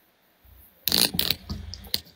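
Plastic water bottle crinkling as it is handled: a short cluster of crackles about a second in, and one more near the end.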